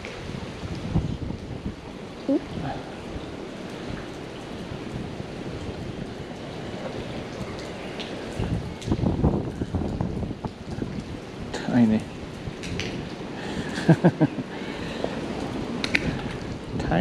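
Steady rain falling on the canal water, with a short laugh near the end.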